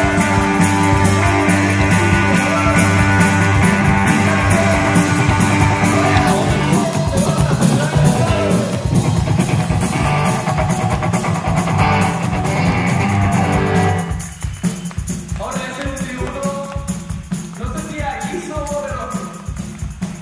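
Live rock played by a guitar-and-drums duo: electric guitar over a drum kit with cymbals, loud and dense, then dropping to a sparser, quieter passage about two-thirds of the way through.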